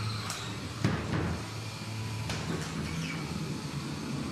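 Combat robots fighting in the arena: a steady low hum with a sharp bang about a second in and a few lighter knocks as the robots hit each other and the arena wall.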